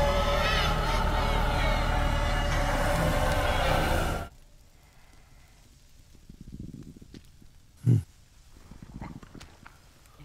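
Film soundtrack: a loud, wavering, inhuman shriek over dense music, which cuts off abruptly about four seconds in. Then it is quiet, with one brief low sound near the end.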